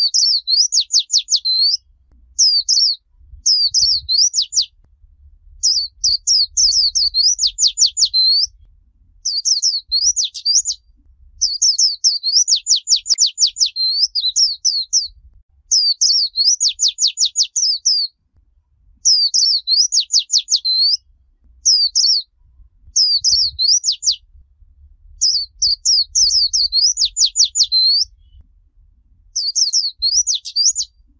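White-eye (vành khuyên) singing the 'líu choè' song style, used as a recording for training young birds: high, fast runs of rapidly falling notes in repeated bursts a second or two long, with short gaps between them.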